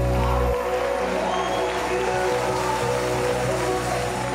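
Gospel band music at the end of a song: the drums and bass stop about half a second in, and the remaining notes are held and slowly fade.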